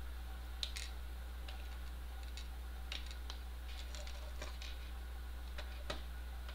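Scattered light clicks and taps of small screws and a plastic case being handled while a single-board computer is fitted and screwed into the case, over a steady low hum.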